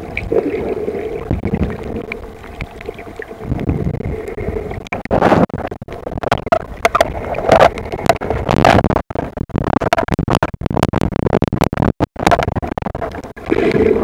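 Muffled underwater water noise picked up by a camera held just below the surface: sloshing and gurgling with many irregular knocks and sudden brief dropouts.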